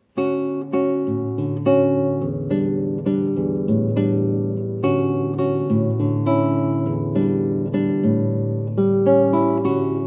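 Solo nylon-string classical guitar played fingerstyle in a bossa nova rhythm: a moving bass line under syncopated plucked chords, starting right at the beginning.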